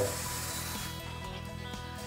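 Tap water running from a newly installed widespread bathroom faucet into a sink with its drain closed, a steady hiss, strongest in the first second, during a leak test of the new faucet. Background music plays throughout.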